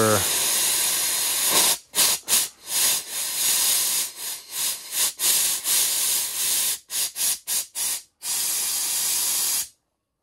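High-pressure steam venting through an opened valve on an electric steam boiler, a loud steady hiss that breaks off and comes back many times in quick succession in the middle, then cuts off suddenly near the end. The boiler pressure, and with it the steam temperature, is being bled down because it is too high to send into the turbine.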